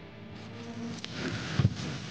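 Hands rummaging for and handling banknotes: a rustling sound builds about a second in, with a few sharp clicks and a thump about one and a half seconds in.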